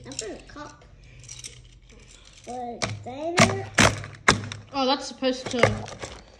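Hard plastic Speed Stacks sport-stacking cups knocking against each other as the stacked set is handled, with three sharp clacks just past the middle, among bursts of talk.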